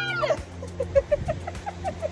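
A woman's high-pitched squeal that ends just after the start, followed by a run of soft laughter, about five short bursts a second, over a low steady hum.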